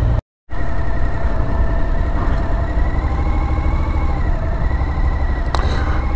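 Motorcycle engine running steadily at low speed, its pitch rising slightly a few seconds in and then easing back, over a low rumble. The sound drops out completely for a moment near the start, and there is a single click near the end.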